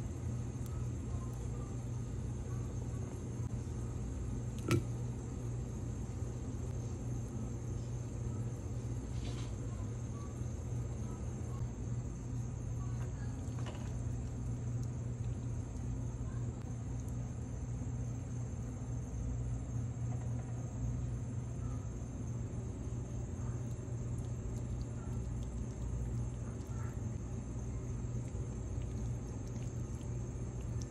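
Steady low hum with a faint high whine above it, with one short knock about five seconds in.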